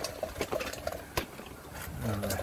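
Handling noise from a handheld camera: a few sharp clicks and knocks over low background noise, the loudest about a second in.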